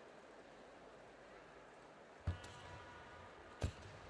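Two sharp, deep thumps about a second and a half apart, from a karate athlete's bare feet stamping onto the competition mat during a kata, over quiet arena room tone.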